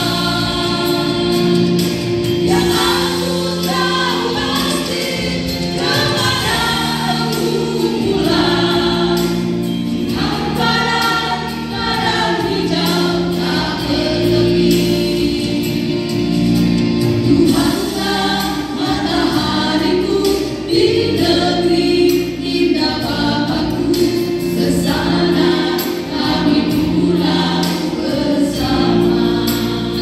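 A small group of women singing a church song together in harmony through handheld microphones and a PA loudspeaker. Their phrases rise and break every few seconds over steady held chords underneath.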